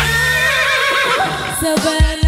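Live band music: a singer holds a long, high, wavering note over a sustained keyboard chord while the drums stop. The hand drums come back in near the end.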